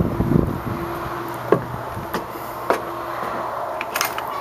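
A screen door being opened and passed through: three sharp clicks about a second apart over a steady low hum.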